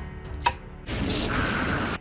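A single click, then about a second of steady mechanical whirring noise that cuts off suddenly.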